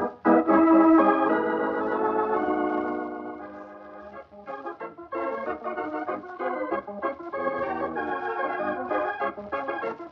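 Organ music: a held chord that fades out over the first few seconds, then a run of short, quick notes from about five seconds in.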